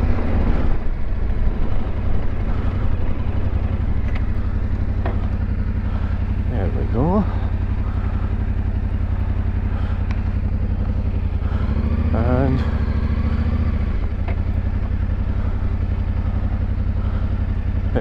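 Yamaha Ténéré 700's parallel-twin engine running at low, steady revs as the motorcycle is ridden along a gravel track. The engine picks up briefly about two-thirds of the way through.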